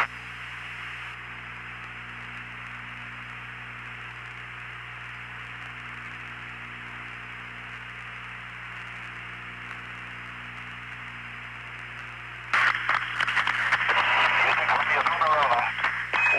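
Steady hiss of an open radio communications channel, squeezed into a narrow telephone-like band, with a faint low hum. About twelve seconds in, a louder, noisier radio transmission breaks in, carrying indistinct voices.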